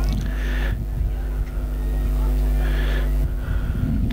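Steady electrical mains hum on the recording, with faint voices in the background.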